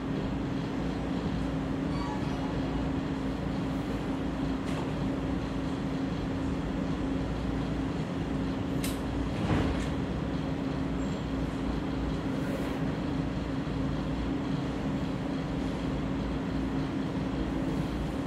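Steady machine hum with a constant low tone over an even background noise, with a couple of faint knocks about halfway through.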